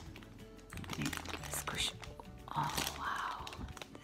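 A clear plastic bag crinkling as a squishy toy is handled inside it, loudest in a burst between about two and a half and three and a half seconds in.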